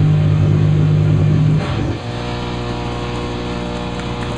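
Loud, distorted live heavy band with electric guitars, bass and drums, which stops about halfway through. A steady drone of held notes and amplifier hum rings on after it.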